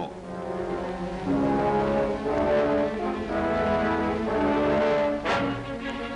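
Orchestral newsreel score with held brass chords that change about every second, and a sudden loud accent about five seconds in.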